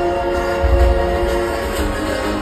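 Live concert music over a stadium sound system: sustained chords held steady, with heavy bass thumps about a second in.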